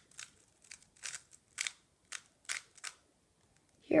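Plastic 3x3 speed cube being turned by hand: a string of about a dozen short, uneven clicks and snaps as its layers are twisted one at a time, stopping about three seconds in.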